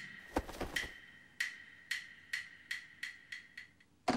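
A run of sharp, ringing wood-block-like knocks, coming faster toward the end, with a dull thump about half a second in; an added percussion sound effect.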